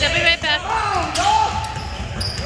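Basketball shoes squeaking on a hardwood gym court during play: several short, high squeals that rise and fall. A basketball bounces alongside, and a player calls out.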